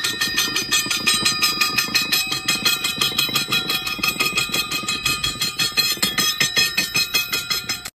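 A woodpecker toy made from a claw-hammer head, bouncing on a coil spring and tapping its metal beak against a steel pole, about six taps a second, each with a bright metallic ring.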